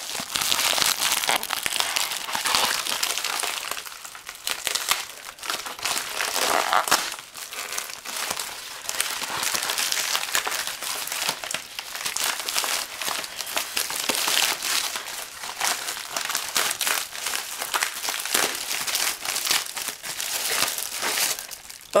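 Plastic shipping mailer being torn open and crinkled by hand, irregular crinkling and rustling with a few brief lulls.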